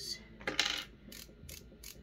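A twist-up click concealer pen being clicked to push product up: a quick run of small plastic ratchet clicks about half a second in, then a few more single clicks.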